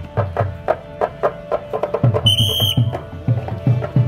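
South Indian temple procession music: drums beaten in a quick, steady rhythm of about four to five strokes a second, under steady held tones. A short, shrill whistle-like tone sounds about two seconds in and lasts about half a second.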